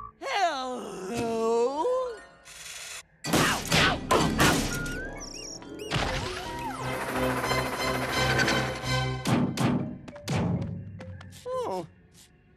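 Cartoon slapstick sound effects: a squawking cartoon bird voice, then a run of loud whacks, thumps and crashes as the bird beats a character with a stick. A long crashing stretch runs in the middle and two more hits come near the end, all over background music.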